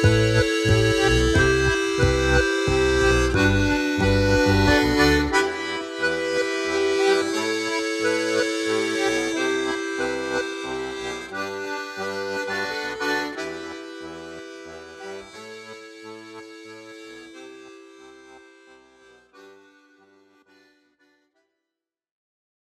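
Melodeon (diatonic button accordion) playing a tune with bass chords. The low bass drops out about five seconds in, and the melody fades away to silence near the end.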